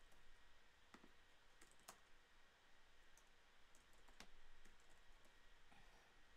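Faint, irregular computer keyboard clicks, a handful of sharp taps spread over several seconds, against near-silent room tone.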